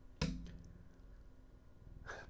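A cat purring faintly, a low steady rumble, with one short thump about a fifth of a second in.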